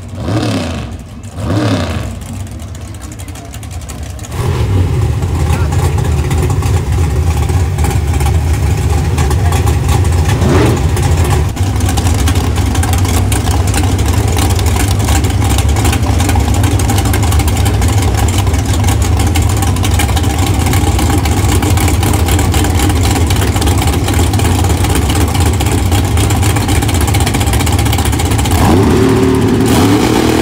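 Pro Mod drag car's big V8 engine revved in a few short blips, then running loud and steady at the starting line from about four seconds in. Near the end the revs climb again as it prepares to launch.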